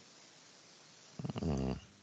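A brief, low murmured 'mm' from a person's voice, about half a second long and a little past a second in, over faint hiss.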